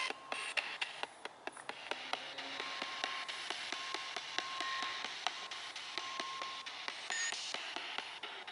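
Spirit box sweeping through radio frequencies, played through a small handheld speaker: a steady hiss of static broken by rapid, irregular clicks and brief snatches of tone.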